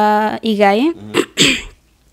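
A woman singing unaccompanied into a microphone, holding long level notes and then sliding through a short phrase. A brief breathy hiss about a second and a half in, then a short pause.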